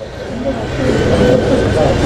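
A passing vehicle: a rushing noise that swells over the first second and a half and then holds, with faint voices in the background.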